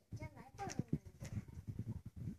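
A young child's voice, wordless or unclear, with light knocks of small plastic toys on a table.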